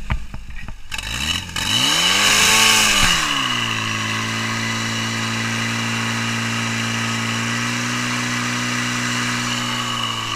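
Portable fire pump's engine with a few knocks at first, then revved hard from about a second in: the pitch climbs, peaks and drops back, then holds at a steady high running speed as the pump works.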